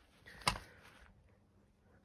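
A single sharp knock about half a second in, followed by a short faint hiss, over low background noise; the vacuum cleaner is not running.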